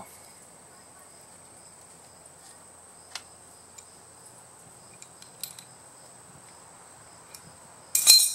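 Steady high-pitched insect drone, with a few faint clicks from the steel crank puller and wrench being handled, and a louder metallic clink at the very end.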